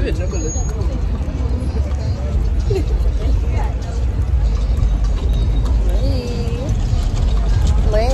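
City street noise picked up on a phone microphone while walking: a steady, loud low rumble of traffic and wind on the microphone, with brief faint snatches of people's voices.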